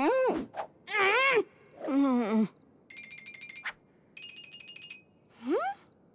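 Three short wavering hums or groans from a voice. Then two runs of rapid pulsing high-pitched tones, and one quick rising vocal glide near the end.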